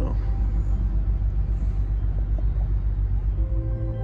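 Low, steady rumble of the yacht motoring. Soft ambient music fades in near the end.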